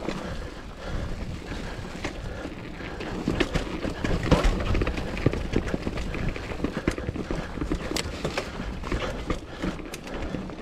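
Mountain bike riding over dry leaf litter, dirt and rock: a steady rush of tyre noise with frequent clattering knocks and rattles from the bike over bumps, the hardest jolts about four seconds in.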